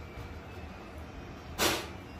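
A person's short sharp breath: one hiss of air lasting about a third of a second near the end, over a faint steady room hum.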